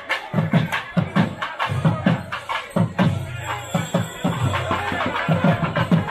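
Percussion music: a drum beating roughly twice a second, with sharper clicking strokes over it.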